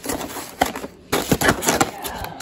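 Black plastic takeout clamshell container being handled, its hinged lid moved, making irregular clicks, creaks and rustling. The rustling is denser and louder from about a second in.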